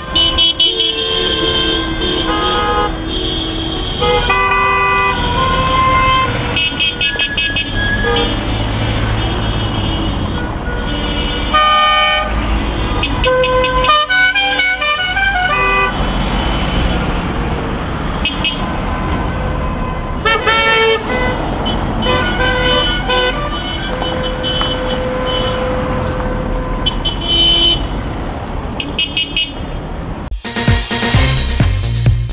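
Car horns honking as a convoy of cars drives slowly past: many horns of different pitches, some held for a second or more and others beeping in quick runs, over the low rumble of engines and tyres. The honking is a sounded signal of support from a protest motorcade.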